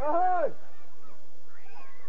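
A single loud shout from a person in a crowd, a half-second yell that rises and falls in pitch, over the crowd's chatter and calls.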